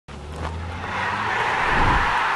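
Rushing whoosh sound effect of an animated logo ident, swelling steadily louder, with a low hum underneath at the start.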